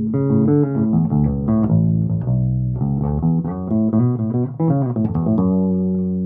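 Electric bass played through a Jaden JD 100B 100-watt combo bass amp with its booster switched off: a quick run of plucked notes that settles on a held note near the end.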